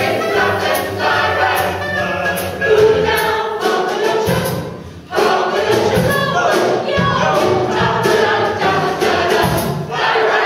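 Mixed choir of men's and women's voices singing in harmony, with a brief lull about five seconds in.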